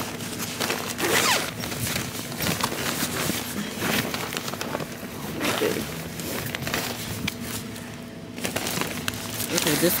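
Indistinct, muffled talk from several people, mixed with rustling and handling noise as the recording device rubs against clothing.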